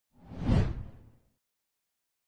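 A single whoosh sound effect for an animated title reveal, with a low boom under it, swelling to a peak about half a second in and fading away within about a second.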